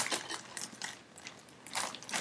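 A soft baby blanket being handled and pulled out: quiet, irregular rustling and crinkling of cloth, louder for a moment near the end.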